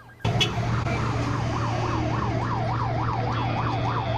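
Emergency vehicle siren in a fast yelp, its pitch sweeping up and down about three times a second, starting a moment in over a steady low hum.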